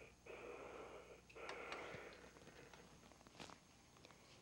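Steam iron pressing a seam on a seam roll: faint soft hissing in three short stretches, then a light knock about three and a half seconds in as the iron is stood on its heel.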